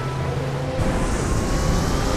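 Film score with held tones, joined about a second in by a rushing, rumbling sound effect of a small submarine moving underwater.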